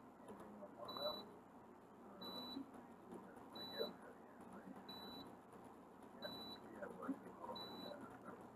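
Faint, soft rustling of a makeup-remover cleansing towelette being wiped across the face. Behind it, a short high electronic beep repeats about every second and a third, six times.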